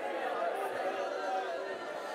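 A congregation's many voices praying aloud at once, overlapping so that no single voice or word stands out.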